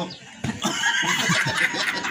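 Loud, high-pitched laughter from a group of people, starting about half a second in.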